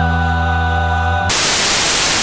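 Music holding a sustained chord, cut off about a second and a half in by a burst of loud TV static hiss, the white-noise sound of a dead channel.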